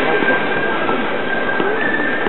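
Crowd hubbub in a large, echoing exhibition hall: many indistinct voices blended into a steady din, with a steady high tone running through it.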